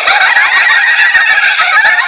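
A large audience laughing, hooting and cheering loudly, many voices at once, in reaction to a punchline.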